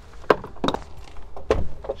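A few plastic clicks and knocks as the charging cable is handled and the electric van's front charge-port flap is pushed shut, the loudest a thump about one and a half seconds in.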